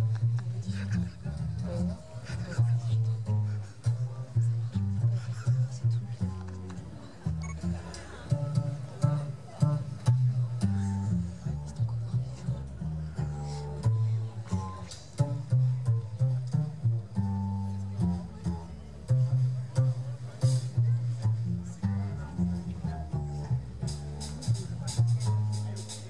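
Double bass played pizzicato in a solo, a line of plucked low notes with the rest of the traditional New Orleans jazz band backing it lightly.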